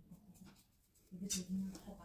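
Faint scratching and rustling of a tint brush and gloved hands working henna paste into the hair roots. The sound drops out completely about half a second in and returns with a brief hiss.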